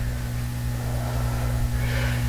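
Steady electrical hum over a low, uneven rumble: room tone with no distinct event.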